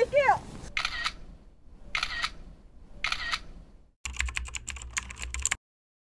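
Camera shutter clicks: three single shutter sounds about a second apart, then a rapid burst of shutter clicks lasting about a second and a half that cuts off abruptly.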